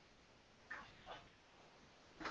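Near silence: room tone, with two faint brief sounds about a second in.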